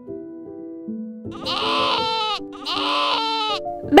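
A sheep bleating twice, each bleat about a second long with a wavering pitch, over soft children's background music.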